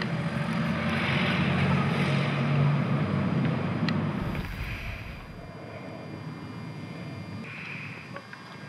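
An engine droning, loudest in the first half, then fading away about halfway through.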